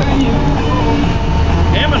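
Excavator's diesel engine idling, a steady low drone, with people's voices over it.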